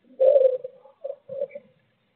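A pigeon cooing: one longer low note followed by two shorter ones.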